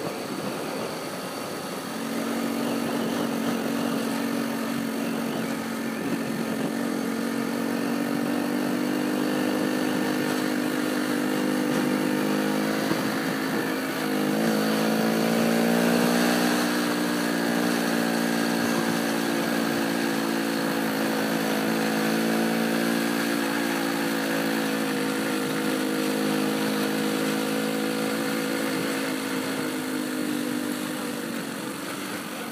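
Small four-stroke motorcycle engine, a 1980 Honda C70, running steadily at road speed with rushing air. Its pitch climbs about halfway through as it speeds up, then holds steady again.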